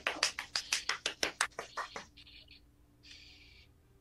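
Rapid, regular slaps or taps, about five a second, that stop about two seconds in, followed by two short hissing sounds.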